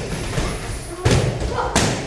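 Boxing gloves striking focus mitts: two sharp smacks, one about a second in and another just under a second later, with duller thuds around them.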